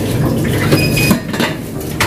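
Kitchen clatter: metal utensils and stainless steel food pans clinking and knocking, with a short metallic ring a little under a second in, over a steady low hum.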